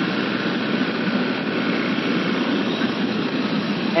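A Yamaha FZ V3 motorcycle being ridden along a road. A steady rush of wind on the microphone lies over its 150 cc single-cylinder engine running at a constant speed.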